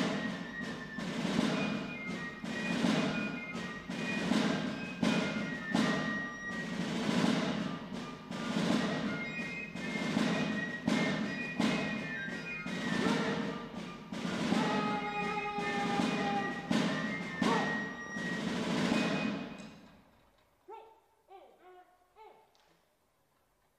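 Military band playing a march, with a steady drumbeat under the melody. The music stops about two seconds before the end, leaving only faint sounds.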